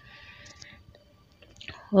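A quiet pause in a close-miked voice recording: faint breath and mouth noise from the speaker, then a short breath just before speech resumes right at the end.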